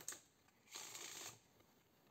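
A deck of Bicycle playing cards being shuffled by hand on a table: a brief faint rustle at the start, then a soft riffle of the cards lasting about half a second, a little under a second in.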